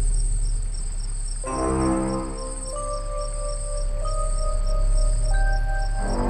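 Crickets chirping in a steady, even rhythm over a continuous high trill. Music with long held notes comes in about a second and a half in.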